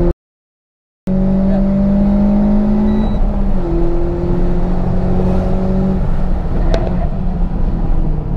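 Renault Sandero RS's 2.0-litre four-cylinder engine heard from inside the cabin, running steadily on track, with a slight drop in pitch about three seconds in. The sound cuts out completely for about a second near the start.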